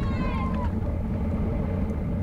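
Wind and road noise on an action camera's microphone on a road bike moving at race speed: a steady low rumble. A few faint falling tones come through in the first moment.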